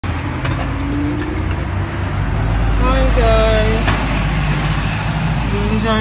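Steady low rumble of road traffic going by, with a few sharp clicks in the first second or so.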